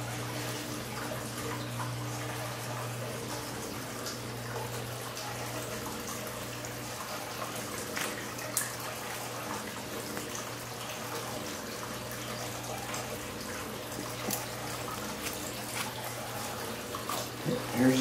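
Steady room noise, a hiss over a low hum, with a few faint snips of hair-cutting shears, about eight seconds in and again near fourteen seconds.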